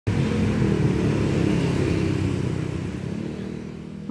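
Street traffic on a busy city road: motorcycles and cars running past with a steady engine rumble that gradually fades toward the end.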